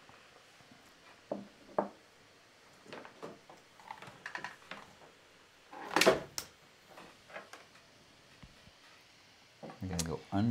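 Scattered knocks and handling noises at a desk as a laptop power cord is reached for and passed across, with two light knocks early and the loudest thump about six seconds in.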